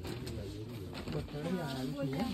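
Faint, low voices and a low hum or murmur in a quiet lull between louder talk; softer voiced sounds come in during the second second.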